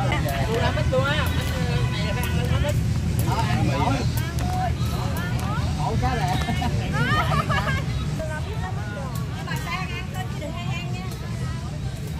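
Several people chatting at once, overlapping voices, over a steady low rumble.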